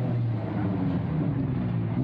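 A low, steady mechanical hum with faint voices in the background.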